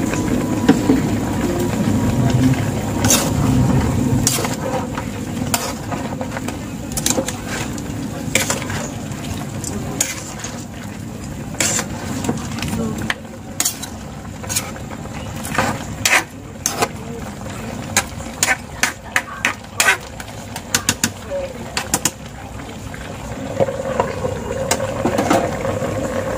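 A metal spatula stirring chunks of pork and potato in a wet sauce in an aluminium pan, scraping and knocking against the pan many times over most of the stretch.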